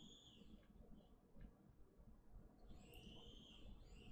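Near silence while the call audio is cut off, with two faint high arching chirps of about a second each, one at the start and one about three seconds in.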